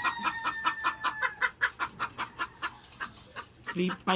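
Gamefowl hens clucking in a fast, even run of short clucks, about five a second, fading after about three seconds.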